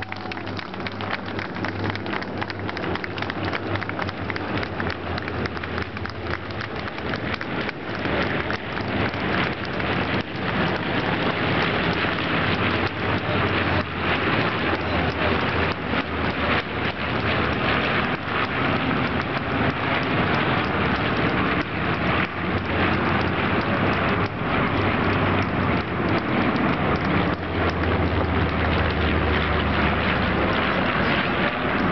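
A formation of B-25 Mitchell bombers passing overhead, the drone of their twin radial engines and propellers making a dense, continuous noise with a low steady hum. It grows louder over the first ten seconds or so and then stays steady and loud.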